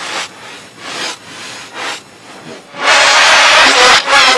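Audio from the Angry German Kid video played backwards and layered at several pitches (the 'G-Major' effect). Soft rasping noises come first; just before three seconds in, a loud, harsh, sustained shriek begins.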